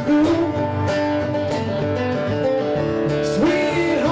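Live band music with guitar, playing steadily.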